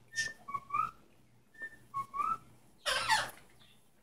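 A pet parrot whistling a short two-note phrase twice, a flat note followed by a rising one, then a loud harsh burst about three seconds in.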